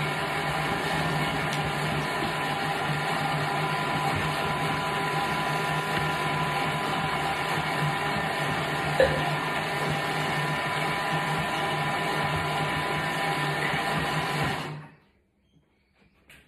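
Thermomix food processor running at speed six, blending cooked cauliflower and milk into a sauce: a steady motor and blade hum that stops about fifteen seconds in.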